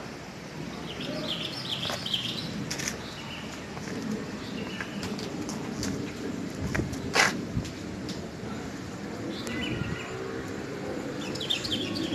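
Small birds chirping in short twittering phrases, a few times, over a low steady background murmur; one sharp click about seven seconds in.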